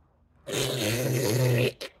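A loud, low, rasping fart sound, starting about half a second in and lasting just over a second before cutting off, followed by a brief click.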